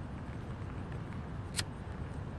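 Steady hum of street traffic, with a single sharp click about one and a half seconds in from a disposable flint lighter being struck.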